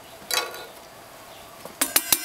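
A stick of wood tapping a blackened metal camp coffee pot, two sharp taps near the end, after a brief clatter of handling about a third of a second in. The taps knock down the grounds in unfiltered bush (cowboy) coffee.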